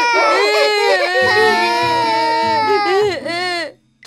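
Several cartoon children wailing and sobbing together in long, overlapping cries that rise and fall in pitch, cutting off suddenly shortly before the end.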